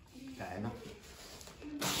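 Quiet room with a faint voice about half a second in, then a person starts speaking loudly just before the end.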